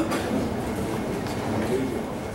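Indistinct murmur of an audience's voices over a steady low background rumble.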